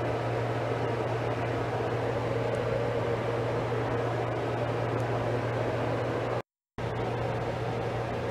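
Steady background hiss with a low electrical-sounding hum, cut off by a brief total silence about six and a half seconds in.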